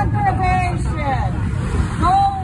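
People shouting and yelling, words not made out, in high rising-and-falling calls, over a steady low rumble.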